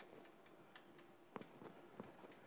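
Chalk tapping against a blackboard as letters are written: a few faint, irregular clicks, the clearest about one and a half seconds in.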